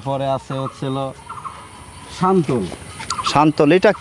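Men's voices talking in short, quick phrases, with a brief pause about a second in.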